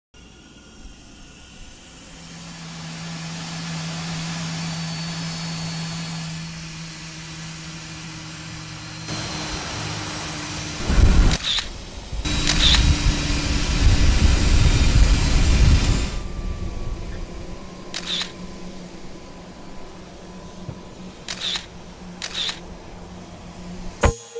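Outdoor ambience: a low steady hum swells over several seconds, then a loud stretch of rushing noise follows, with five sharp clicks spread through the second half.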